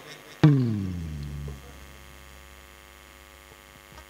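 One amplified instrument note from a funeral band, struck about half a second in, sliding down in pitch and fading over about a second, followed by a steady low hum from the sound system.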